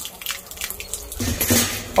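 A garden hose's thin stream of water splashing onto wet concrete, with light metallic clinks from a chain leash. The splashing grows louder about a second in.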